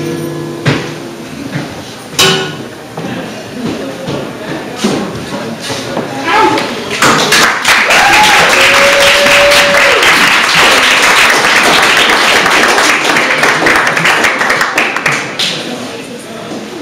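Scattered knocks and handling noises, then about seven seconds in a small audience breaks into applause, with a whoop early in the clapping, which dies away near the end.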